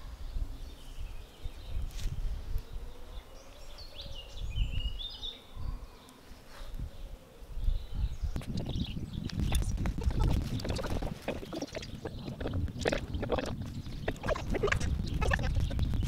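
Outdoor sound: a low rumble of wind on the microphone, a few bird chirps a few seconds in, and from about halfway on a run of close rustles and light knocks from movement among dry leaves and the wax pan and brush.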